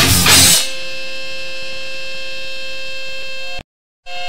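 Heavy metal-punk band music with drums and distorted guitar stops about half a second in. A steady held chord-like tone of several pitches is left at an even level, then it cuts off abruptly near the end into dead silence.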